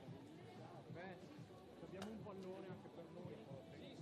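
Faint, indistinct voices talking, with a single sharp click about two seconds in.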